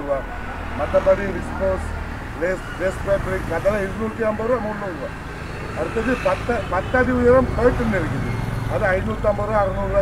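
Voices talking throughout, over a steady low rumble.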